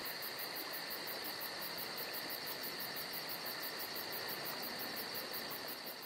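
Insects chirping in a fast, even pulse over a steady hiss and a steady high buzz, a nature-ambience bed that begins to fade out near the end.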